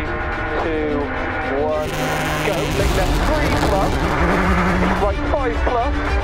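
Subaru Impreza rally car's turbocharged flat-four engine revving and pulling away onto a gravel stage, heard from inside the cabin, with noise rising sharply about two seconds in. Music and voices run underneath.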